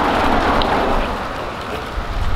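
A car driving past on the street, its engine and tyre noise swelling and then fading away.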